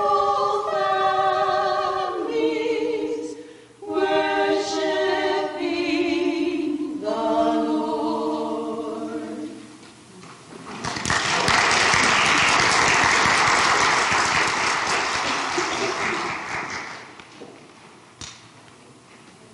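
A quartet of women singing in harmony, ending on a held chord about ten seconds in. Congregation applause follows at once and dies away just before the end.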